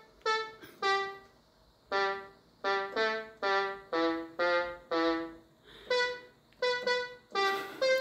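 Yamaha PortaSound PSS-190 mini keyboard played one note at a time: a slow single-line melody of about a dozen separate notes, with a short pause about a second in.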